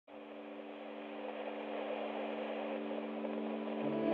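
Music intro: a held synth chord over a soft hiss, fading in from silence and slowly growing louder.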